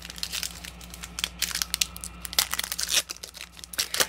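Foil trading-card booster pack wrapper crinkling as it is handled, in a dense run of irregular crackles.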